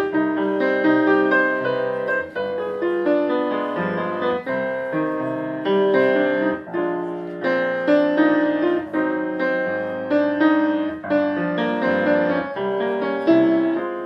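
Grand piano playing a jazz solo with no voice: chords struck every second or so under a moving melodic line, each attack ringing and decaying.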